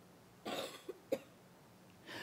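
A person coughing: a short cough about half a second in, then a second, sharper cough just after one second.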